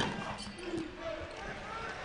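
A basketball strikes the rim once on a missed shot, a single sharp clang right at the start, then the low murmur of an arena crowd with indistinct voices.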